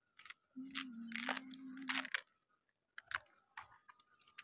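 Crisp crunching and tearing of cabbage leaves being pulled from a head of cabbage, a dense run of crackles over the first two seconds with a low steady hum beneath, then a few lighter snaps and clicks near the end.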